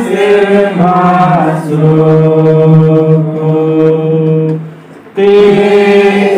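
A congregation of women and men singing a hymn together in unison from hymnbooks, holding one long note through the middle. Near the end they pause briefly for breath, then the singing starts again.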